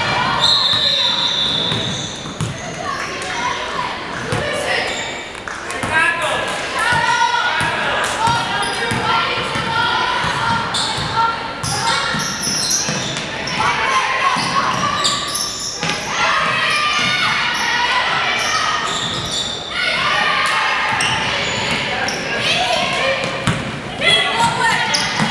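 Basketball dribbling and bouncing on a hardwood gym floor, with players' and spectators' voices and calls echoing in the large gym. A high steady tone sounds for about a second and a half near the start.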